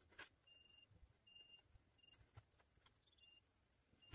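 DT9208A digital multimeter's continuity buzzer giving four faint, short high-pitched beeps, the first two longer, as the test probe touches the stripped wire ends of a 3.5 mm jack cable and closes the circuit. A faint click of the probe tip comes just before the first beep.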